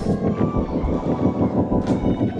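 Live church band playing a praise song: a drum kit keeps a steady beat under held chords, with cymbal crashes at the start and near the end.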